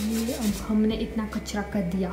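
A steel spoon rubbing and scraping dry brownie ingredients, flour and cocoa, through a steel mesh sieve in quick repeated strokes, with a woman's voice over it.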